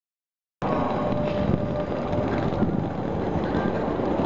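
Wind buffeting the camera microphone over the noise of a busy city square, cutting in abruptly about half a second in.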